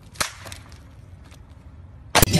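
A skateboard slammed down onto asphalt, a single sharp crack as it hits and breaks, a moment into the sound. A few fainter knocks follow.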